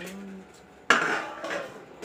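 Stainless steel dishes knocking together once, about a second in, with a short ringing decay.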